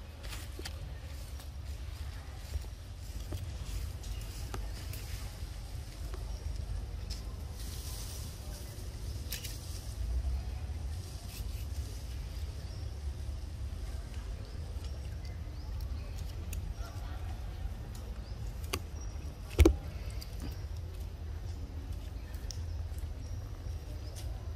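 Outdoor background with a steady low rumble, scattered faint clicks and one sharp click about twenty seconds in.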